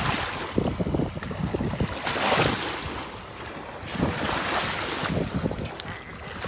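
Seaside wind buffeting the microphone over the wash of surf, the noise swelling in surges roughly every two seconds.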